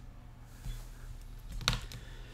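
A few light clicks from working a computer while a new Word document is opened, with one sharper click near the end.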